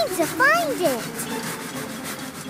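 Cartoon soundtrack: a short sing-song gliding vocal sound in the first second, followed by a rhythmic scratchy, rasping sound effect.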